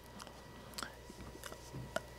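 Faint mouth clicks and lip smacks from a man close to the microphone: a handful of small, scattered ticks over quiet room tone.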